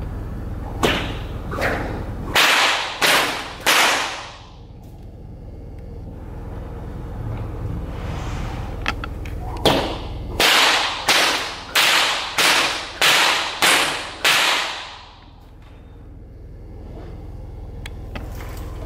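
A rope swung beside a horse, making a series of sharp swishes in two runs: about five strokes in the first few seconds, then about eight more, roughly one every 0.6 s.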